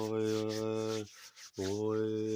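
A man overtone singing: a held low drone with a higher whistling overtone that rises and falls above it. The note breaks off about halfway, and after a short breath a new drone starts near the end.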